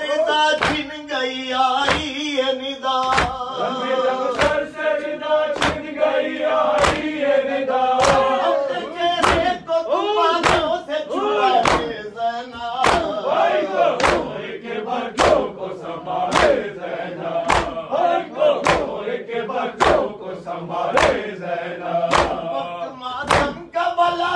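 Male mourners chanting an Urdu noha in unison, led by a reciter at the microphone, over a steady beat of matam (chest-beating with the palms) a little under two strokes a second.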